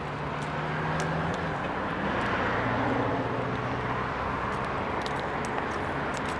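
Road traffic: a motor vehicle passing, a steady rush of engine and tyre noise with a low engine hum that swells gently and then eases off.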